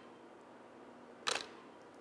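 Camera shutter firing once: a single short, sharp click about a second in, over faint room tone.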